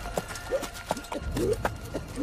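A horse's hooves clip-clopping, a string of sharp, irregularly spaced hoof strikes.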